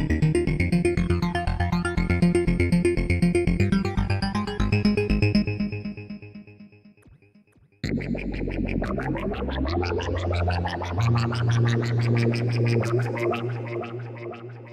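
Roland System-100 software synthesizer playing a fast, rhythmic arpeggiated sequence patch that fades out about six seconds in. Just under eight seconds in, a second sequenced patch starts abruptly with a rising sweep over a held bass note, which steps up in pitch about three seconds later.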